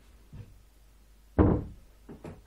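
A faint knock a little under half a second in, then one loud thump about a second and a half in that dies away over a few tenths of a second.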